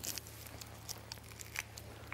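Faint scattered clicks and crinkling rustles from dissection work on a cadaver: instruments and tissue being handled. A low steady hum sits underneath.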